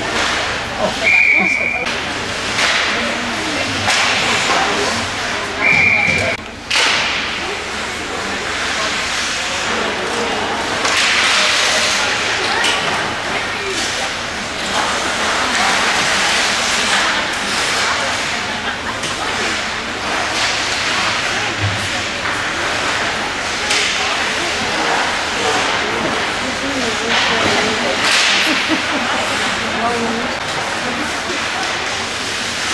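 Ice hockey game noise in an arena: skates on the ice, clatter of sticks and puck, and voices of players and spectators. Two short referee's whistle blasts in the first few seconds.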